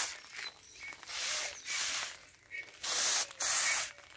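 Hand-pumped knapsack sprayer's wand spraying liquid fertilizer as a mist, in four short hissing bursts that come in two pairs.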